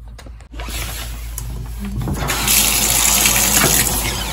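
Water running in a bathtub shower, a steady rushing spray that starts about half a second in and grows louder about two seconds in.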